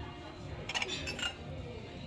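Ceramic mugs clinking against each other as one is lifted from a crowded shelf: a few light clinks about a second in, over faint store background noise.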